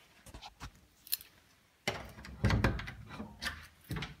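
Antique pine wardrobe door being unlocked and opened by hand: a few light metallic clicks, then about two seconds in a louder knock and rubbing of the wooden door as it swings.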